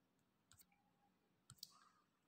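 Near silence, with two faint short clicks about one and a half seconds in.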